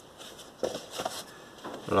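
Cardboard LP record sleeves being handled: a few short scrapes and knocks as a sleeve is lifted and slid aside over the stack, about half a second to a second in.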